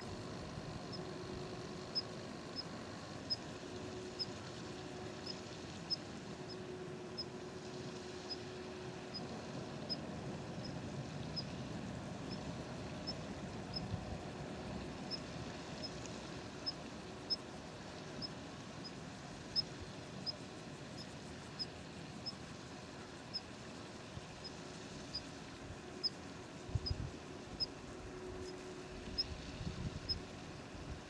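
A small animal's short, high chirp, repeated evenly about twice a second over a steady low rush of outdoor background noise. A couple of low bumps come near the end.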